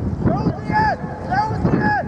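Several short shouted calls from voices at a rugby match, each rising and falling in pitch, over steady wind rumble on the microphone.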